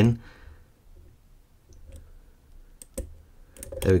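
Faint clicks of a hook pick working the pins inside an Abus Titalium padlock's Extra Class pin-tumbler core under turning tension. A few sharp ticks are spread over the quiet, the clearest about three seconds in, just before a pin sets.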